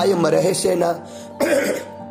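A voice singing a devotional song over a steady instrumental accompaniment, breaking off about a second in before one short, breathy vocal sound.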